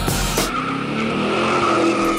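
Cheer routine music mix that breaks from its beat, about half a second in, into a drawn-out car-skid sound effect with slowly rising tones.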